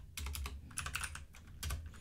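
Typing on a computer keyboard: a quick, uneven run of key clicks.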